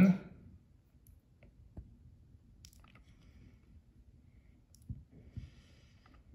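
A handful of faint, sharp clicks of a computer mouse, spaced irregularly a second or more apart, in a quiet room.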